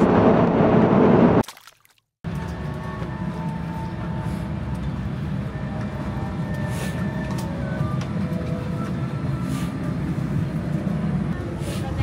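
Loud, steady airliner cabin roar, cut off suddenly about a second and a half in. After a short silence comes the quieter, steady hum of a parked airliner's cabin, with faint voices, heard while walking down the aisle to the exit.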